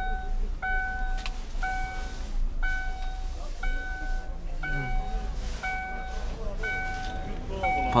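Chevrolet Epica's warning chime sounding with the key in the ignition and a door open: one short, clear beep repeating steadily about once a second.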